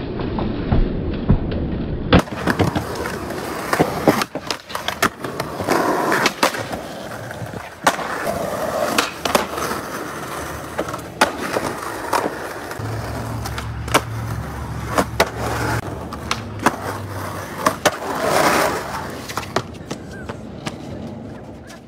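Skateboard on concrete: wheels rolling, with many sharp pops and clacks as the board is snapped, lands and strikes ledges, at uneven intervals. A low hum sounds for a few seconds after the middle.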